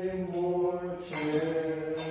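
A low voice chanting a slow sacred hymn in long held notes, ringing in the church's reverberation; a brief click sounds about a second in.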